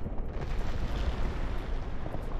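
A deep, noisy rumble with a whooshing hiss that swells up about half a second in and eases off again: a cinematic sound effect for a star igniting.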